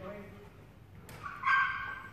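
A small dog gives one short, high-pitched bark about one and a half seconds in, just after a sharp click.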